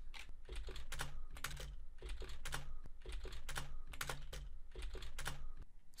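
Computer keyboard typing: a continuous run of irregular keystrokes as a line of code is entered.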